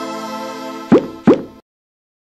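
Electronic logo sting: a sustained synth chord fading out, then two quick rising pop sound effects about a third of a second apart near the end.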